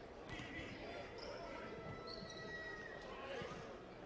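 Faint ambience of a basketball arena during a stoppage in play: scattered distant voices, with a few faint squeaks near the middle.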